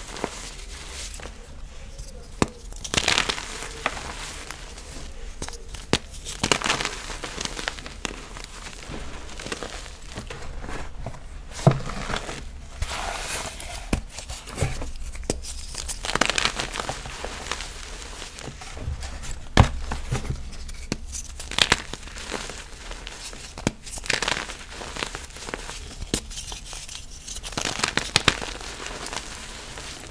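Hands crushing and crumbling pressed-powder reforms into loose powder: irregular soft crunches and crumbles, with a few sharper cracks.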